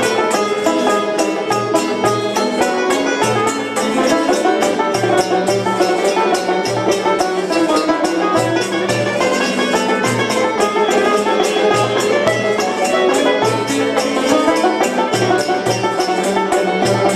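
Live instrumental passage: a small string ensemble with plucked lute and banjo playing a quick, busy melody alongside a violin, over a steady percussion beat.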